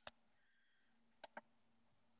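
Near silence broken by faint clicks: one at the very start and a quick pair about a second and a quarter in. The pair fits a front-panel button being pressed on a Coby TFDVD7091 portable TV/DVD player.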